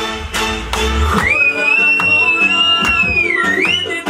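Loud dance music with a steady beat. About a second in, a high lead line holds one long note, which dips and rises again near the end.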